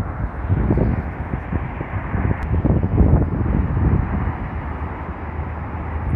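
Wind buffeting the microphone: a loud, uneven low rumble that swells and drops.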